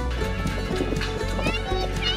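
Background music with a steady low bass and a quick, clip-clop-like rhythm, with a high gliding voice near the end.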